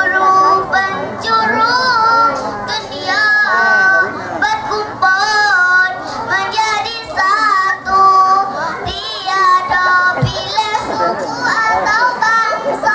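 A group of children singing together, one girl's voice amplified through a handheld microphone, in a held, melodic tune.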